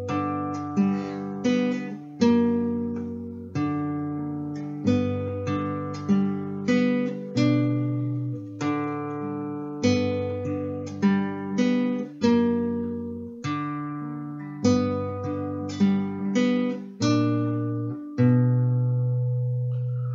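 Classical guitar played fingerstyle at a slow, even tempo: plucked melody and arpeggio notes over held bass notes, each note ringing and fading. A last chord near the end is left to ring out.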